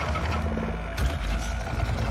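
Creature sound effects in an animated film: a deep, steady low rumble with a rapid rattling, clicking texture, and one sharp hit about a second in.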